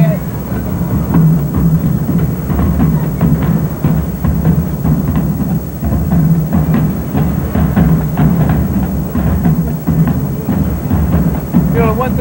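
Marching band drumline playing a steady drum cadence: rapid, evenly repeating drum strokes with a heavy low end from the bass drums.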